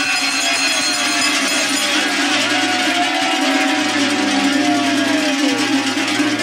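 Several large metal cowbells (talăngi) shaken hard together in a continuous loud jangle, over a low pulsing drone. It is the group's noisy refrain that answers the call at the end of a verse of a New Year wishing chant.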